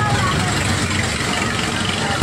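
Steady fairground din with faint voices mixed in.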